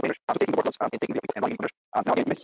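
A man's voice breaking up into garbled, choppy fragments, the audio of a poor online-call connection cutting in and out rapidly so that no words come through.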